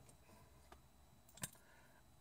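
Near silence: quiet room tone inside a car, with two faint clicks, the second and sharper one about a second and a half in.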